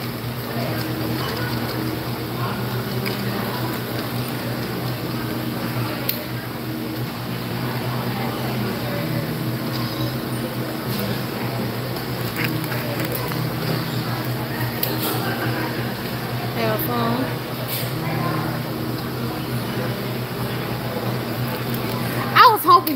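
Warehouse store ambience: a steady low hum under background chatter of distant voices, with a few scattered clicks and rattles.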